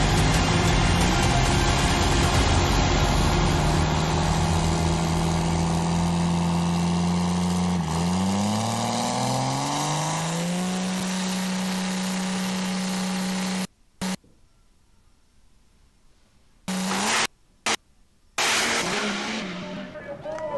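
Diesel drag-racing Chevrolet S-10's engine running loud and steady at the starting line. About eight seconds in its pitch dips, then climbs again as it is revved. Past the middle the sound cuts out abruptly and returns only in short loud bursts.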